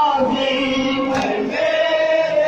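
A group of men chanting a noha, a Shia mourning lament, in unison, the voices holding long sustained notes. A single sharp smack cuts through about a second in.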